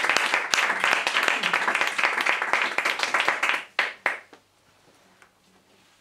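Audience applauding, thinning out about three and a half seconds in, with a couple of last claps before it stops.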